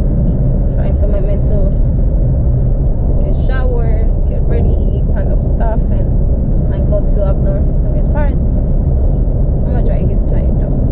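Steady low rumble of road and engine noise inside a moving car, with faint voices over it.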